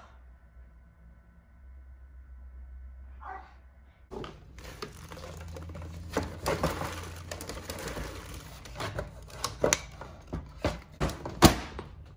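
Wooden bird feeder being handled and tipped over a trash can, making a busy run of clicks, knocks and rustling as its old contents are emptied into the bin, with a sharp clack near the end as the bin lid shuts. Before that, a few seconds of quiet steady hum.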